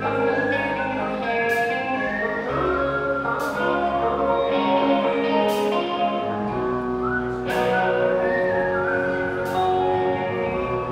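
Live rock band playing a slow song: a sustained, bending lead guitar line over bass and keyboard chords that change about every two seconds, with a cymbal hit roughly every two seconds.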